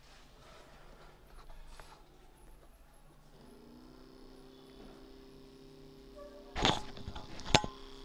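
Small DC motor starting up about three seconds in, its whine rising briefly and then holding steady as it runs off a homemade lead-acid cell, drawing current to discharge the freshly formed cell. Two sharp clicks from handling the connecting wires near the end are the loudest sounds.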